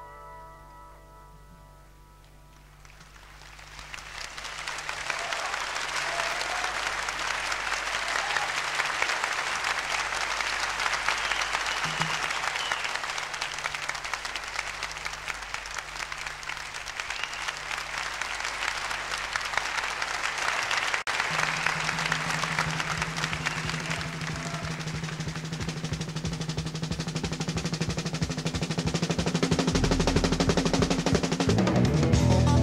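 The last keyboard chords of a jazz-fusion piece die away, then a concert audience applauds over a held low bass note. About two-thirds of the way through, a louder held bass note and a pulsing low rhythm come in under the applause as the band begins the next tune.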